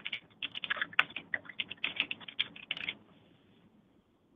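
Computer keyboard typing: a quick run of keystrokes that stops about three seconds in.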